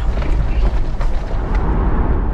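Steady low rumble inside an SUV's cabin while it drives over a rough, stony gravel track: engine and tyre noise.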